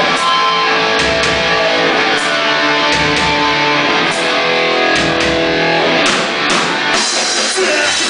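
Live punk rock band playing loud: electric guitar chords over drums, with a sharp drum hit roughly once a second.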